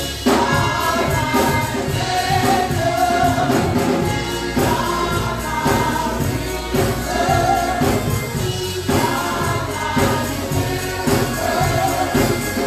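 Gospel music with a choir singing over a steady beat.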